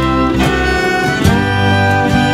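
Slow Irish air on acoustic guitar, chords plucked or strummed in an even pulse under long, held string notes and a low bass line.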